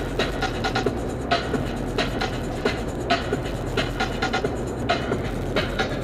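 Music with a steady beat, over the low steady drone of a car driving on the freeway.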